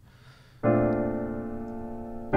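A piano chord struck about half a second in and left ringing, slowly fading: the first chord of a jazz progression played as an ear-training example.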